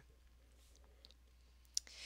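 Near silence with faint room tone, broken near the end by one short, sharp click.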